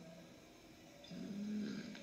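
A pause with faint room tone, then about a second in, a faint drawn-out hum from a voice, like a hesitant 'mmm', held at one pitch until speech resumes.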